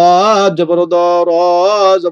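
A man chanting Arabic syllables in the drawn-out, melodic style of Quran-reading practice, three long held syllables with short breaks between them.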